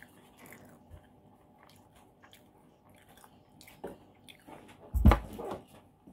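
Close-up chewing of a thick-crust bacon and cheese pizza slice, with soft mouth clicks and smacks. A louder bite comes about five seconds in, with a thump.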